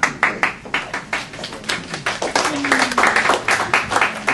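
A small audience applauding, starting suddenly, with the individual claps heard as a quick, uneven patter.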